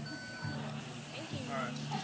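A point-of-sale card terminal at a café counter giving one electronic beep about half a second long, followed by chatter.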